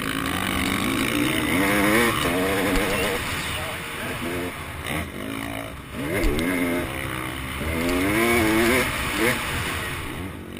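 Motocross bike engine heard from on board, revving up in repeated sweeps and dropping back as the rider shifts and rolls off the throttle over the track, with a steady rush of wind and dirt noise on the microphone.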